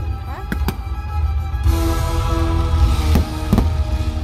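Aerial fireworks bursting over a loud show soundtrack with heavy bass. There are sharp bangs about half a second in and twice more past three seconds, and a crackling hiss from just under two seconds in.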